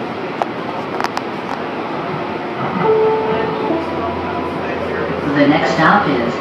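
A Calgary CTrain light-rail car running between stations, heard from inside: a steady rumble of the moving train with two sharp clicks about half a second apart. Brief whining tones come about three seconds in, and a low hum builds after that. A voice starts near the end.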